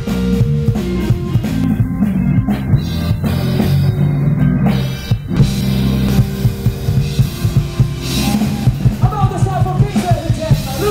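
Live blues band playing amplified: electric guitar, bass and drum kit with steady drum hits. Near the end a singer's voice comes in.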